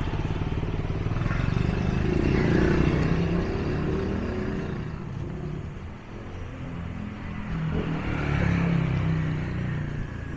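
Motorbike traffic going by on the street, the engine sound swelling twice, about two to three seconds in and again near the end.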